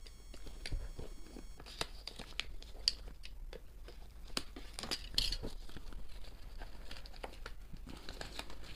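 Snap-off utility knife blade slitting the clear plastic shrink-wrap on a cardboard box, then the film crinkling and tearing as it is peeled away by hand, with irregular small clicks and rustles.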